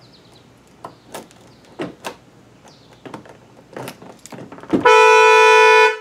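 Light clicks and scrapes of a metal key working in a car door's lock cylinder. About five seconds in, the car horn sounds one loud steady blast lasting about a second: the anti-theft alarm, triggered by unlocking the armed car with the key.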